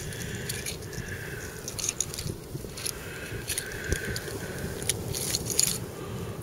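Small metal finds (bottle caps and scraps of copper and aluminium) clicking and scraping against one another as they are picked through in a gloved hand: a run of irregular light clicks.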